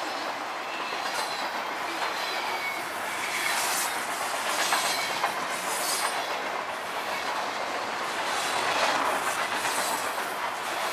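High-sided freight cars of a CSX freight train rolling past: a steady rumble of steel wheels on rail, with irregular clicks and clacks over the rail joints and a faint wheel squeal at times.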